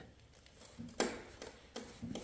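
Faint knocks, the clearest about a second in, as the electric scooter's hub-motor rear wheel is turned by hand while its three phase wires are shorted together, so the motor brakes itself and turns very poorly.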